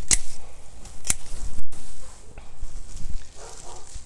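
Hand pruning shears snipping through spearmint stems: two sharp snips about a second apart, with leaves and stems rustling as the cut bunch is pulled free.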